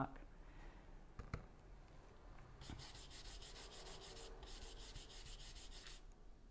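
A stiff-bristled stencil brush rubs paint through a plastic stencil onto a small wooden sign. It makes a faint scratchy brushing of quick repeated strokes that starts about two and a half seconds in, after a couple of small clicks.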